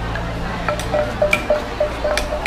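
Wooden pestle pounding papaya salad in a clay mortar: quick, evenly spaced knocks, about four a second, each with a short hollow ring, starting about a second in. Market crowd noise runs underneath.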